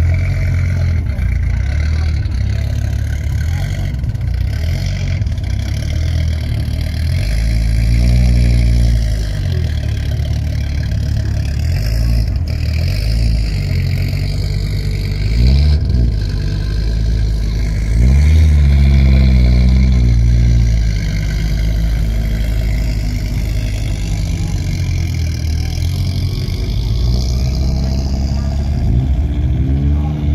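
Audi Quattro rally car's five-cylinder engine running at idle and revved several times, each rev rising and falling in pitch, the longest about two-thirds of the way through.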